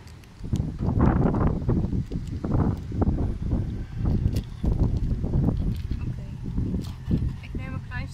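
Wind buffeting the microphone: an uneven low rumble that rises and falls throughout, with light rustling and handling of a snack package.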